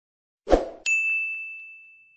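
Logo-animation sound effect: a brief swish about half a second in, then a single bright, bell-like ding that rings on as one clear tone and fades slowly.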